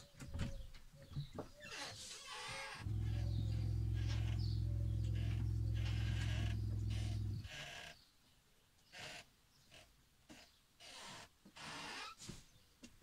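Camper's electric water pump humming steadily for about four and a half seconds, starting about three seconds in and cutting off suddenly, as a tap is run to wet a rag. Small knocks and rustles of handling come before and after.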